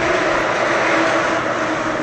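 Steady machine noise with a faint, even hum running under it.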